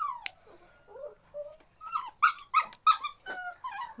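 A dog whining and whimpering in a series of short, high-pitched calls, with a quicker run of sharper yelps about two seconds in.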